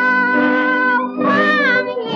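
A woman's high soprano voice singing long held notes with vibrato over instrumental accompaniment, with a sliding phrase about a second in, from a 1934 Chinese art-song shellac record.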